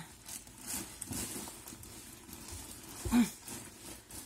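Fabric rustling of a cushion and clothing as a person shifts and settles into a chair, with a soft thump and a brief vocal noise about three seconds in.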